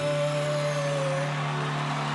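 A live band holds the final sustained chord at the end of a rock-and-roll song, with a high held note over it that stops about a second in while the low chord rings on.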